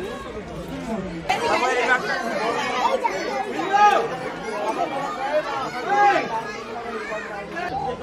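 Chatter of several people talking, words indistinct, louder from about a second in.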